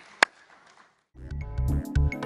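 A last sharp hand clap, a moment of near silence, then outro music with a pulsing bass beat and synthesizer tones starts a little over a second in and is the loudest sound.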